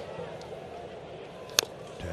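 A single sharp crack of a wooden baseball bat fouling off a 97 mph four-seam fastball, about one and a half seconds in, over a steady low murmur from the ballpark crowd.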